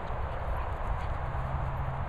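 Rhythmic dull thuds of an Airedale terrier's paws galloping on grass, over a steady low outdoor rumble.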